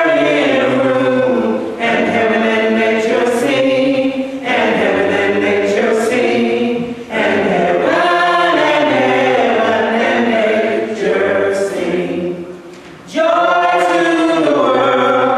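A choir singing unaccompanied, in long held phrases with short breaks between them; the singing drops away for about a second near the end before coming back in.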